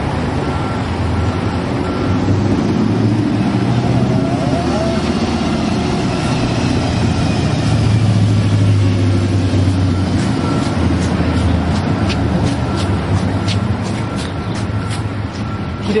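Street traffic: a motor vehicle's low engine rumble swells and then eases off as it goes by. Near the end comes a run of light ticks.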